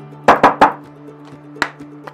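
Background music with a steady low note, over which come three quick sharp taps about a third of a second in and one more near the end, from a perfume bottle being handled.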